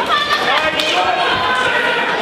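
Spectators and corners shouting at a boxing bout, with dull thuds from the ring as the boxers exchange punches.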